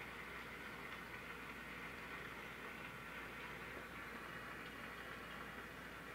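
Faint, steady applause from a large seated audience.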